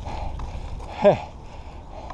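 Inline skate wheels rolling on an asphalt path, with wind rumbling on the microphone. About a second in, a short falling vocal sound from the skater.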